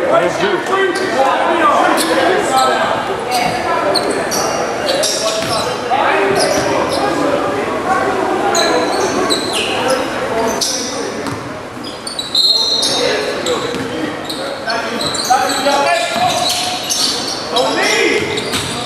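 Basketball bouncing on a hardwood gym floor during play, with short high sneaker squeaks and background voices of players and spectators, echoing in a large gym.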